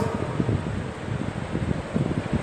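Low, irregular rumble of moving air buffeting the microphone, like wind noise, during a pause in speech.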